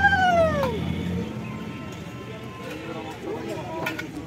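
A conch shell (shankha) blown in a long, steady note that sags in pitch and dies away within the first second. After it, only faint low background sounds with a few brief pitched glides.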